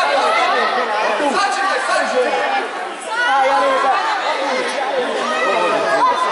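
Many voices talking and calling out over one another at once, an indistinct chatter from the children on the pitch and the onlookers, with a short lull about halfway through.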